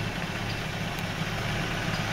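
A vehicle engine idling, a steady low hum with an even fast pulse underneath.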